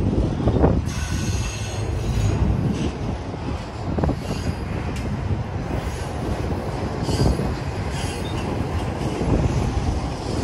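Double-stack intermodal well cars of a freight train rolling past close by: a continuous rumble of steel wheels on rail, with a few sharp knocks from the cars.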